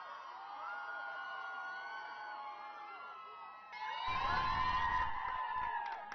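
A crowd of fans cheering and shouting, with long drawn-out calls. It grows louder about four seconds in, joined by a low rumble.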